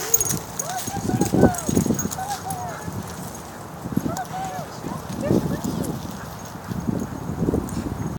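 Small dog giving short, high, rising-and-falling yips and whines again and again while playing, with bursts of low scuffling noise in between.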